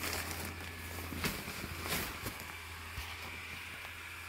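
Steady low hum of an airblown inflatable's blower fan running, with a few faint rustles and knocks of the nylon fabric being handled.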